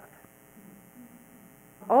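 Faint, steady electrical hum during a pause in a woman's talk; her voice starts again near the end.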